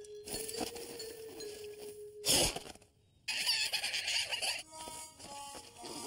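Cartoon slapstick sound effects. A steady held squeal-like tone runs for about two seconds and is cut off by a loud sudden hit. After a moment of silence come a burst of hiss and a few short musical notes.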